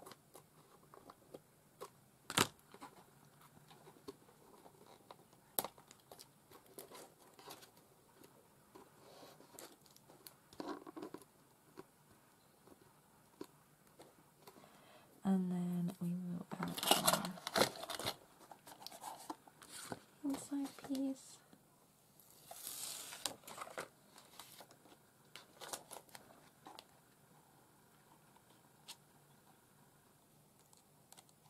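Paper being handled, cut with scissors and pressed down by hand: scattered light taps, clicks and rustles, with a louder paper rustle a little past the middle. A short wordless hum about halfway through.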